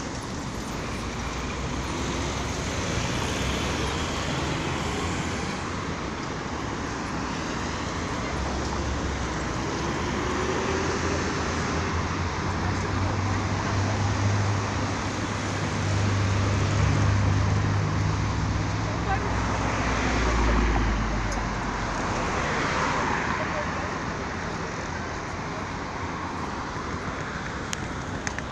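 Road traffic at a city intersection: cars passing with a steady tyre-and-engine noise. The engine rumble swells through the middle and is loudest about twenty seconds in, then eases off.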